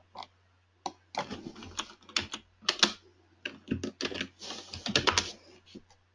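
Typing on a computer keyboard: quick runs of keystrokes with short pauses between them, as a command is entered at a console.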